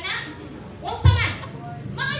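A woman's voice speaking animatedly, the speech only (no other sound source), with one loud low thump about halfway through.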